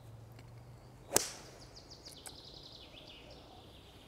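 A golf club striking a golf ball once, a sharp crack about a second in.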